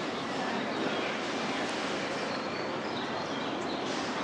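Steady outdoor ambient noise, an even wash of sound with no single clear source, with a few faint high chirps in the second half.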